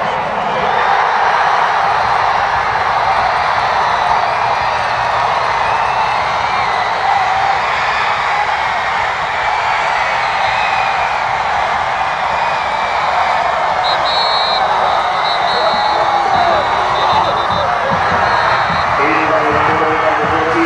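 High school football crowd cheering and yelling steadily through a touchdown play. Several short high whistles cut through in the last few seconds.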